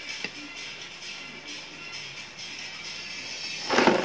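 Soft background music, then near the end a loud rustling clatter as a clear plastic jar of krupuk crackers with a red lid is picked up and handled, the crackers shifting inside.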